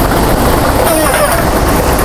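Lottery ball draw machine running: a loud, steady rush of air from its blowers.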